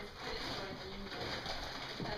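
An indistinct human voice with no clear words.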